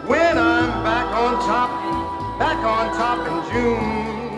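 A chirigota group playing live: acoustic guitars under a swooping, voice-like melody line, with a steady bass note.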